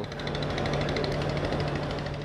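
A motor running steadily with a rapid, even pulse over a low hum.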